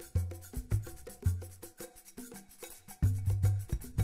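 Background music with quick light percussive ticks over short low bass notes.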